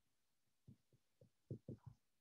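Near silence broken by faint, soft taps of a dry-erase marker writing on a whiteboard, about five short strokes in the second half.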